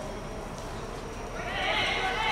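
A long, wavering shout rising out of steady background noise about one and a half seconds in, loud and high, still going at the end.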